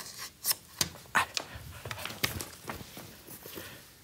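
Light scattered knocks and rustling as a person moves about and handles a film clapperboard, several short sharp clicks spread through the few seconds.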